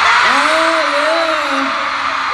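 Arena crowd of fans screaming. Over it, a single voice holds a long 'oh', rising and falling for about a second and a half.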